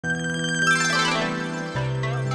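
Electronic channel-intro jingle: bright chime-like notes cascade quickly downward over a held bass note, which steps lower in pitch near the end.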